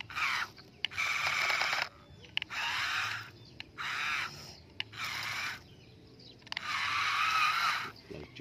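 Radio-controlled toy dump truck's electric drive motor and gearbox whirring in six short bursts as the throttle is pulsed, the pitch wavering within each burst.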